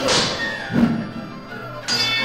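Music with fight sound effects: a sword clashing against a shield at the start, trailing off, then a thud a little under a second in and another sharp hit near the end.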